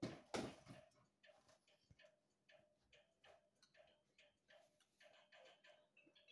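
Near silence with faint, regular ticking, about three ticks a second, after a short scuffing noise right at the start.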